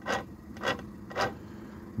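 Gears inside a Suzuki four-stroke outboard's lower unit grinding as the driveshaft is turned by hand, three short scrapes about half a second apart. The mechanic suspects the gear noise means the gearcase has no gear oil.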